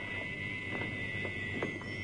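Quiet background hiss with a steady high-pitched whine, and two faint taps about a second apart.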